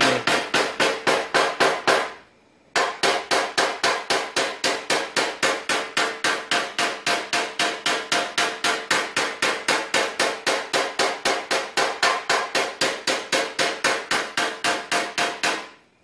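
Fast, even tapping of a hammer on a metal-tipped knockdown punch against a car fender, about four or five light taps a second, with a short break about two seconds in. This is paintless dent repair: knocking down the raised ridge beside a dent to relieve the tension in the metal.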